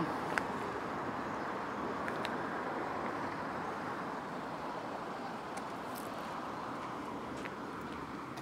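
Steady road traffic noise from a city street, an even rush with a few faint clicks.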